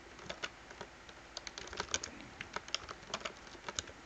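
Typing on a computer keyboard: a couple of dozen light key clicks at an irregular pace, some in quick runs.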